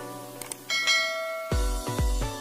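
Sound effects of a subscribe-button animation over music: a short click, then a bright bell ding that rings on. Near the end an electronic beat with heavy bass kicks in.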